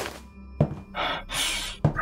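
Sound effects of a paper letter being handed over: a soft thunk, then a short rustle of paper about a second in, then another thunk near the end, over background music.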